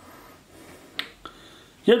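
A fingertip tapping a smartphone's touchscreen: one sharp click about halfway through, then a fainter one just after.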